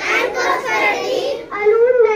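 Young schoolchildren reciting a pledge together in chorus, one girl leading at a microphone, in continuous chanted phrases.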